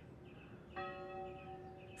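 A single bell stroke about three-quarters of a second in, its tone ringing on and slowly dying away.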